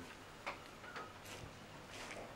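Faint footsteps on a paved path: a few soft, separate steps about half a second apart over quiet outdoor background.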